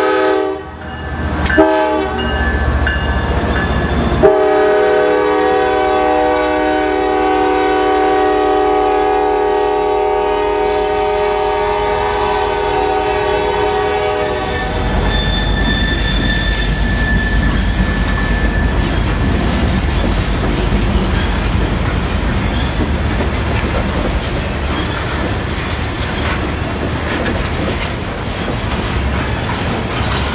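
A CSX freight locomotive's multi-chime air horn sounds a long, loud chord for a grade crossing as the engine passes. It breaks off briefly about a second in and again about four seconds in, then stops about halfway through. After that comes the steady rumble and clickety-clack of the freight cars rolling past.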